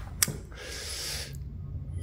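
A person's breathing: a short mouth click, then a breathy exhale over a faint steady hum.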